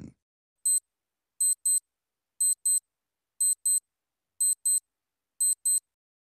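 Countdown-timer sound effect: a clock-like ticking of short, high-pitched electronic clicks. There is a single tick about a second in, then quick double ticks once a second.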